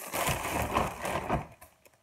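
Plastic produce packaging crinkling and rustling as groceries are handled, dying away about one and a half seconds in.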